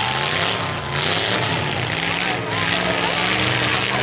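Demolition derby pickup truck engines running steadily together, a constant low drone under broad noise, with no crash heard.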